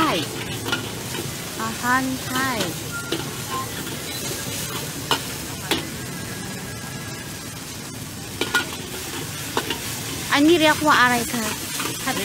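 Rice being stir-fried in a wok: a steady sizzle, with the metal ladle scraping and clacking against the wok now and then. Voices are heard over it, loudest near the end.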